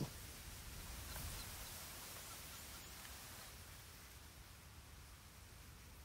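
Faint, even hiss of quiet outdoor background, fading slowly, with no distinct sound standing out.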